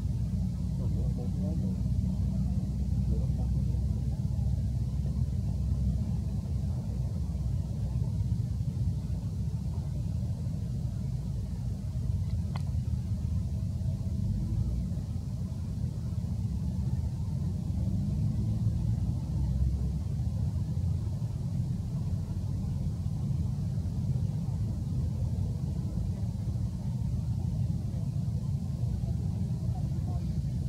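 Steady low rumble of outdoor background noise with faint voices in the distance, and a single sharp click about twelve seconds in.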